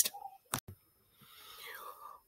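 A pause in a woman's narration: a short double click, then a faint breath drawn before she speaks again.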